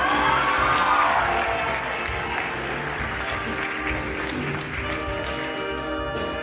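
Audience applauding a saxophone solo in a jazz band tune while the band keeps playing underneath; the horn section comes back in with held notes near the end.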